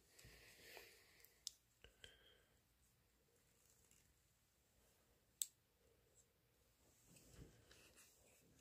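Near silence with a few faint clicks of small plastic toy parts being handled and snapped onto a Playmobil figure, the sharpest about five and a half seconds in.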